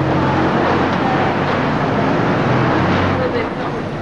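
Steady vehicle noise: an engine's low hum under a loud rushing sound, easing off near the end.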